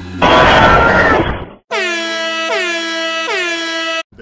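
A loud, harsh noise burst for about a second and a half, then an air horn sound effect blasting three times in quick succession, each blast dipping in pitch as it starts.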